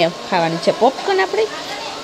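Steady whirring of workshop machinery, with people talking over it.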